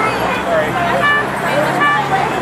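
People chatting over a steady low hum of street traffic, with two short high tones about a second in and near the end.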